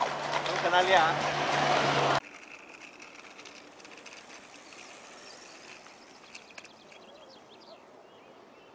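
Loud street noise heard from a moving bicycle, with a steady low hum, that cuts off abruptly about two seconds in. After that comes quiet open-air park ambience with a few faint bird chirps.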